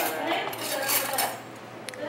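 Cutlery and crockery clinking and clattering on a glass-topped table as a plate is lifted and moved, with a sharp click just before the end.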